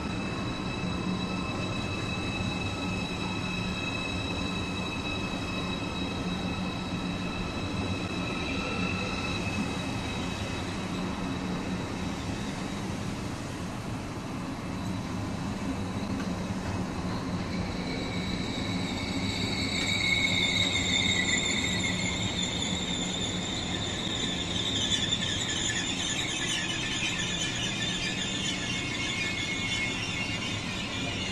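Two ICE 4 high-speed trains at the platform, one arriving and one pulling out, with a steady low hum and high-pitched wheel squeal. The squeal thickens into several wavering high tones from a little past the middle, loudest about two-thirds of the way in.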